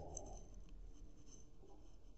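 Faint scratching of a pen writing on exercise-book paper.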